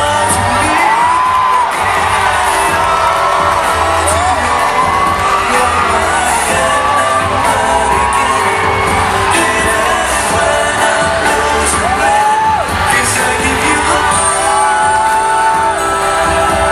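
Male vocalists singing a pop song live into handheld microphones over musical accompaniment, one sung melody line with gliding, held notes.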